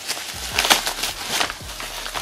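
Plastic bubble wrap being pulled open and peeled off a package by hand, crinkling with a run of small, irregular crackles.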